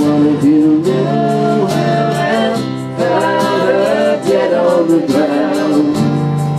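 A band playing a song live, with a voice singing long held notes that bend and slide between pitches over the instruments.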